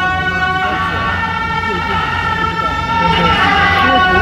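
Beiguan processional band's suona (double-reed horns) playing a melody in long held notes, over a low steady hum and crowd voices.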